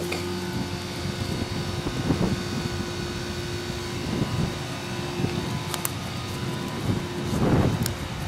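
A steady machine hum, a constant drone with a fixed pitch over a low rush, with a few soft rustling swells, the longest near the end.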